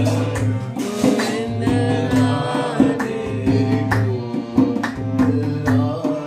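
Voices singing a bhajan to a harmonium's steady reedy drone and a dholak's regular beat, with hand clapping in time.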